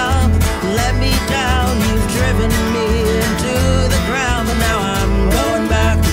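Acoustic country-folk band playing live: two acoustic guitars strummed over a plucked upright bass, with a man singing lead.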